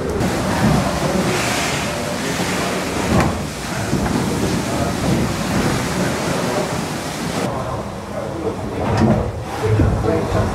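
Steam beam engine at work in its engine house: a steady hiss of steam over low mechanical running noise, with voices in the background. The hiss drops away about seven and a half seconds in.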